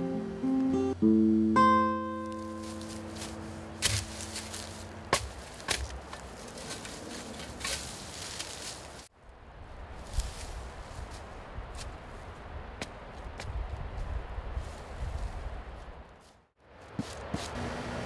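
Acoustic guitar score: a few held notes ring and die away over the first few seconds. Then a steady outdoor hiss with scattered sharp clicks and scrapes from a shovel digging into dry, needle-covered ground.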